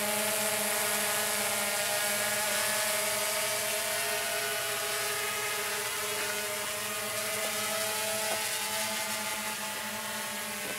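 DJI Phantom 2 quadcopter's four electric motors and propellers whining steadily in forward flight, the pitch wavering slightly as it manoeuvres and growing a little quieter toward the end.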